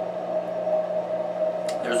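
A steady hum made of two even tones, one low and one higher, the room tone of a small room. A man starts speaking near the end.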